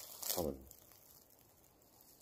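A single spoken word, "tamam" (okay), then near silence: faint outdoor ambience.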